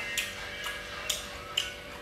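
Wooden chopsticks clicking against porcelain bowls, about four short sharp clicks roughly half a second apart, while food is picked up and dipped in sauce.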